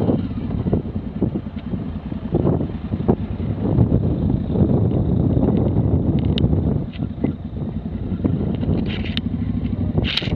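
Motorcycle engine running at low speed on a gravel track, with wind noise on the helmet-camera microphone. The engine eases off about seven seconds in as the bike slows.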